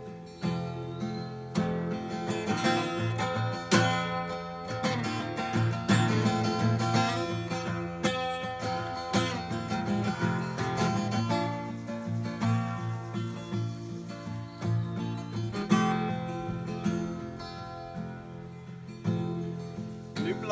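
Solo acoustic guitar strummed in a steady rhythm, chords ringing between strokes, in an instrumental passage with no voice.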